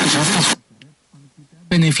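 Tivoli Audio PAL+ radio being tuned between FM stations. A hissy broadcast of music and voice cuts off sharply about half a second in, a weak, faint voice comes through for about a second, then a clear news-reading voice comes in strongly near the end.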